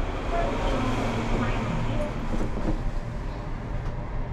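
Steady low rumble inside a passenger elevator as people step into the car, with faint voices.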